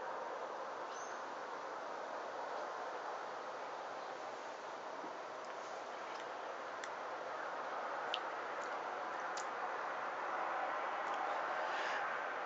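Steady hiss of distant road traffic, with a few faint, brief high chirps about halfway through.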